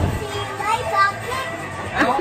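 A young child's voice in play: a few short, high vocal sounds.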